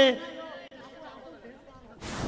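A commentator's voice trailing off, then faint background chatter of voices.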